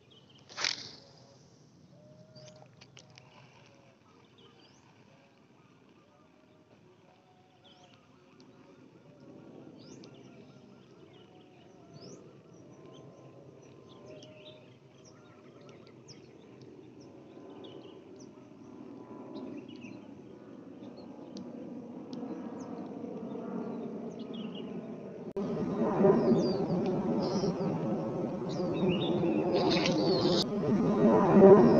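Faint bird chirps and insects in quiet open-air ambience, with one short, sharp sound about a second in. Background music fades in underneath and grows steadily louder, then turns loud in the last few seconds.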